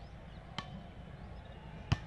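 A volleyball struck by hand twice: a light smack about half a second in and a sharp, loud one near the end.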